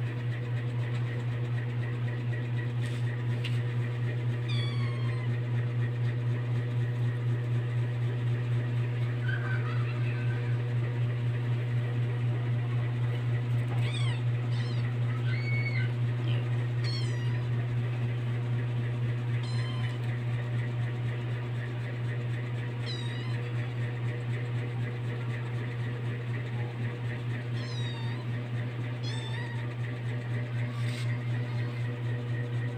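About nine brief, high-pitched animal calls, scattered and irregular, each a quick gliding cry, over a steady low hum.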